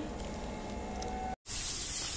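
Faint background noise with a thin steady tone, cut off by a brief dropout; then a steady hiss of fuel alcohol burning in small open cans under a metal baking tray.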